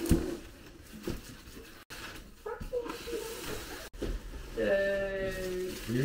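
Cardboard box and plastic wrapping handled, with scattered light knocks and rustling as a boxed oven is lifted out. Near the end a person makes a drawn-out, bleat-like "uhh" that is the loudest sound.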